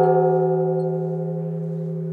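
A struck metal bell-like instrument ringing on with several steady tones, fading slowly over the first second and then holding.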